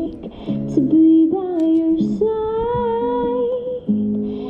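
A woman singing long, gliding notes over acoustic guitar chords.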